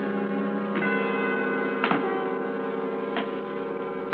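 Bell-like chimes over a held low chord, as in a musical bridge between scenes: a struck note rings out about a second in, again near two seconds and once more after three seconds.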